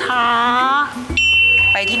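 A woman's long, drawn-out spoken 'kha'. Then, about a second in, a steady high electronic tone from the soundtrack starts over a low hum and holds on unchanged.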